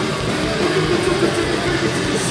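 Hardcore punk band playing live and loud, with distorted electric guitars, bass and drums in a continuous wall of sound.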